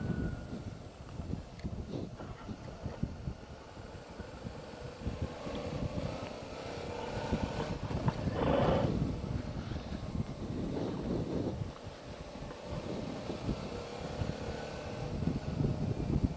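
Suzuki V-Strom 650's V-twin engine running at a steady cruise, heard faintly under wind rush and buffeting on the microphone, with a brief louder swell about halfway through.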